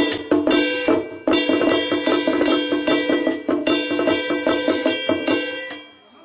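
Tujia three-stick drum (sanbanggu) percussion: a drum beaten rapidly with wooden sticks, a dense run of strikes over ringing pitched tones, dying away near the end.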